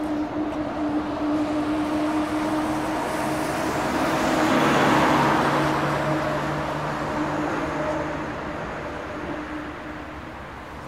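Road traffic: a car passes by, swelling to its loudest about five seconds in and then fading, over a steady low hum.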